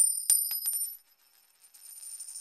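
A high-pitched metallic ringing with a few quick clicks, loudest in the first second, then dropping away and returning faintly near the end.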